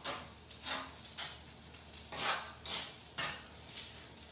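A cooking utensil stirring pasta in a non-stick skillet, scraping and clinking against the pan in about six short strokes. Under it is a faint sizzle of salmon frying in oil.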